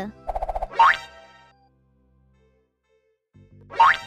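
Cartoon comedy sound effects: a quick rattling run of notes rising into an upward-sliding whistle-like tone, then a pause, then another upward slide near the end.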